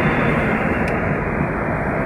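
Steady road noise inside a moving car's cabin at highway speed: tyres on the asphalt and the engine running, an even rumble with no distinct events.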